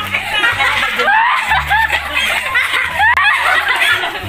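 Several people laughing and chuckling together, with background music running underneath.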